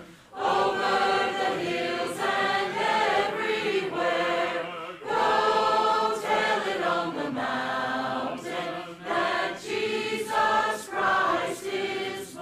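Mixed church choir of men's and women's voices singing a hymn in sustained phrases, with a brief breath pause at the very start and short breaks between lines.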